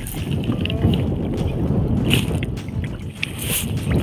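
Wind rumbling on the microphone over open water, with small splashes, drips and clicks as a wet gill net is pulled hand over hand out of the water into a small boat.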